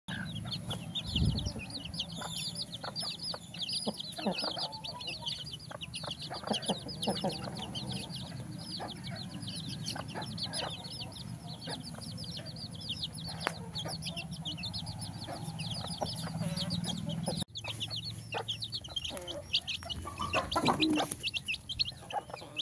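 A flock of chicks peeping without pause in rapid, high cheeps, with hens clucking and scattered short taps of pecking at feed on concrete.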